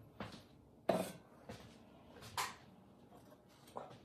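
A few short knocks and clinks of glazed stoneware pots being handled and set down while a kiln is unloaded, the loudest about a second in.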